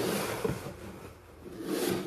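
Cardboard Pokémon Elite Trainer Box sliding and rubbing across a wooden tabletop as it is handled, a scraping rustle with a light knock about half a second in. The rustle dips in the middle and grows again near the end.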